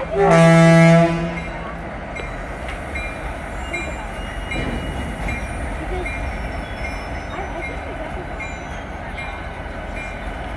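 Diesel locomotive air horn sounding one loud blast of about a second, followed by the steady low rumble of a slow-moving freight train rolling past.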